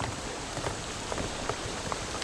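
Steady watery hiss with a few soft, irregular knocks: footsteps on the wooden deck of a boat.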